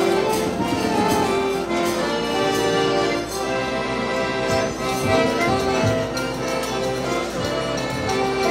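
Piano accordion playing an instrumental melody in held, stepping notes, with a drum keeping a steady beat underneath: the introduction to a song whose singing has not yet begun.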